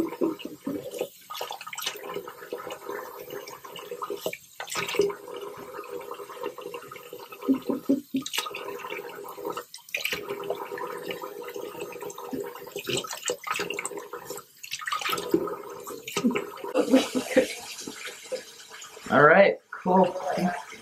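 Bathroom faucet running into a sink while hands splash water onto a face to rinse off shaving cream, the splashing coming in irregular surges over the steady stream.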